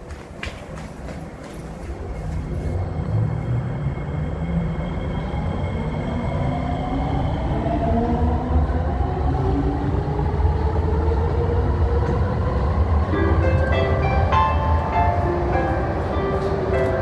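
A Kawasaki-Sifang C151B metro train pulling out of the station. A low rumble builds and the traction motors whine in several tones that rise together in pitch as it accelerates. A tune comes in about thirteen seconds in.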